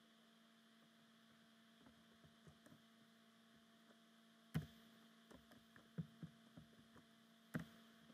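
Near quiet: a steady low electrical hum with scattered faint clicks of computer keystrokes and mouse clicks as a formula is typed. The sharpest clicks come about four and a half seconds in and again near the end.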